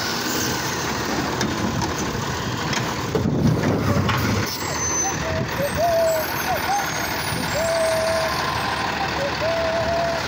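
Automated side-loader garbage truck working at the curb: engine and hydraulics run as the arm tips a trash cart into the hopper and sets it back down. A heavier rumble comes about three to four seconds in, then a wavering whine in the second half.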